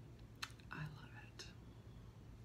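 Soft mouth sounds from a person between words: two small lip or tongue clicks about a second apart, with a faint breathy murmur between them.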